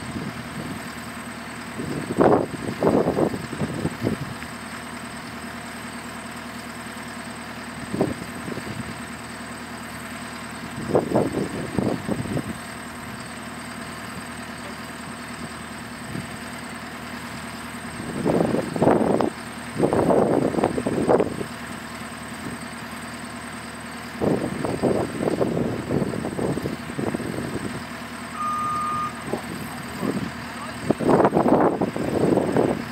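JCB skid-steer loader's diesel engine idling steadily. Louder bursts of noise come and go several times over it, each lasting about a second or two.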